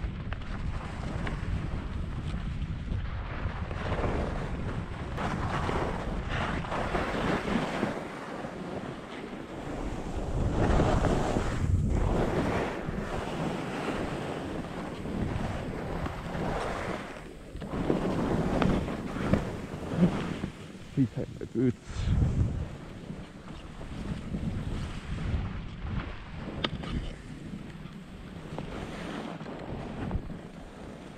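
Wind rushing over an action camera's microphone during a downhill ski run, mixed with skis scraping and hissing over packed snow and moguls. The rush swells and fades with the skier's speed and turns, with louder, choppier surges about two-thirds of the way through.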